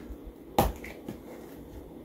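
A plastic spice shaker of ground mustard being handled, with one sharp click about half a second in, then quiet room tone.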